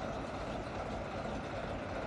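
ChME3 diesel-electric shunting locomotive moving slowly past with its diesel engine running steadily, as it pushes a railway snowplough along the track.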